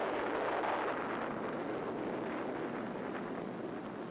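Atomic bomb blast on an old film soundtrack: a loud, steady rush of rumbling noise that slowly fades.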